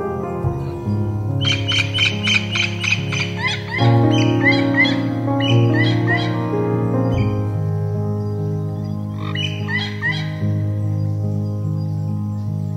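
Slow, calm piano music with long held notes, with bird chirps mixed in as quick runs of high, rising calls, once from about a second and a half in and again later.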